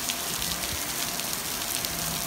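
Steady rain falling on a swimming pool and its paved deck: a constant hiss with scattered ticks of single drops.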